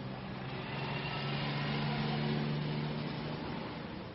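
A motor vehicle passing on a city street: a steady low engine hum and road noise that swells about a second in and fades before the end.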